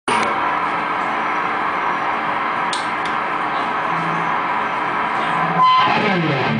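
Electric guitar through a Laney LC30 amp, a chord held and sustaining for about five and a half seconds. Near the end it gives way to a sharp high note that begins to fall in pitch.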